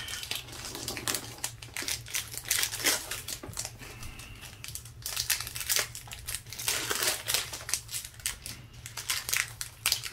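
Foil wrapper of a Pokémon Shining Fates booster pack crinkling in irregular crackles as it is handled and torn open.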